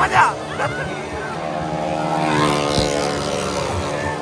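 Motorcycle engine running steadily as the rider circles the wooden wall of a Well of Death drum, with brief voices right at the start.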